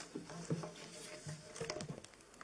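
Soft rustling and light taps at a speaker's desk as papers are laid down and the gooseneck microphone is handled, with a quick cluster of small clicks near the end.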